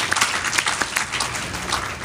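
Audience applauding, the clapping thinning out toward the end.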